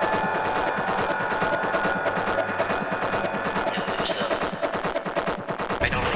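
Industrial techno: rapid, hard distorted percussion hits over sustained synth tones, with a heavy low end returning right at the end.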